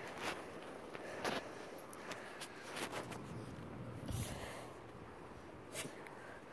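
Faint, irregular soft knocks and rustles of someone moving about while holding the recording phone, with a low thump about four seconds in.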